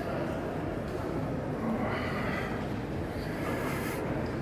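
Airport terminal hall ambience: a steady hum of a large indoor space with faint, distant voices.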